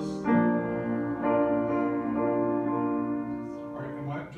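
Upright piano playing slow, sustained chords, moving to a new chord about once a second and fading near the end.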